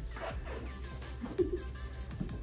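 A short rasping tear of wrapping being peeled open, over background music with steady repeating tones.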